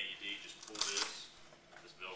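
Plastic front cover of an AED being handled and lifted open, with a brief clattering snap just under a second in.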